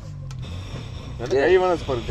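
A man's voice saying a few unclear words about a second in, over a low steady hum.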